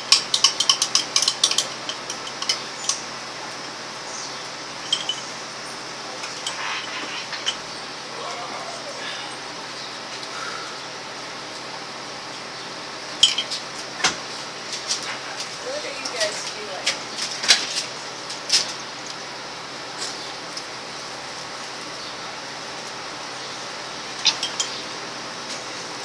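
Metal spoon stirring a glass of raw eggs and mustard, clinking against the glass in spurts of quick clicks near the start, through the middle and again near the end, with quieter stretches between.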